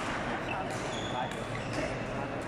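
Busy badminton hall: overlapping chatter from many people, brief high squeaks of court shoes on the floor, and several short sharp knocks of racket strings striking shuttlecocks.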